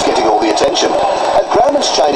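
A person talking, with the sound of a broadcast TV report.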